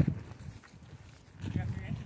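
Faint speech from people nearby. A loud voice cuts off at the start, there is a short lull, and quieter talk resumes about a second and a half in.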